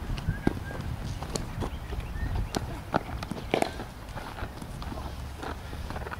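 Scattered sharp knocks and clicks at irregular intervals at cricket net practice, with a bowler's footfalls on the artificial turf as he walks back and runs in, over a steady low rumble. The loudest knock comes right at the start.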